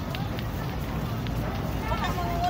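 Busy outdoor walkway ambience: a steady low rumble with brief snatches of passers-by's voices and a few faint clicks.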